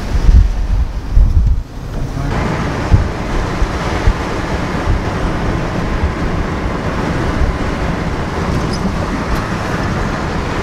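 Low rumbling thumps of wind and handling on the microphone for the first two seconds, then a steady rush of road and wind noise inside a moving vehicle.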